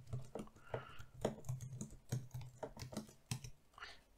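Typing on a computer keyboard: a run of quick, uneven key clicks, several a second.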